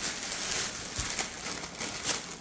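Faint rustling and handling of a plastic bag of oranges, with one soft thump about a second in.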